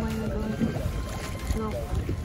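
Steady low rumble of wind and water around a rowed gondola on open, choppy water, with voices over it.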